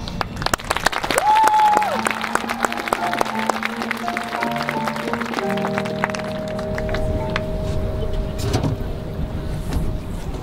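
Marching band show music in a quiet passage: sharp ticks, a tone that slides up, holds briefly and slides back down about a second in, then soft held notes from about halfway.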